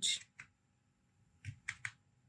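Computer keyboard keystrokes: a single key press about half a second in, then three quick presses near the end.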